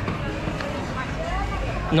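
Street ambience: a steady low rumble of traffic with faint voices of passers-by in the background.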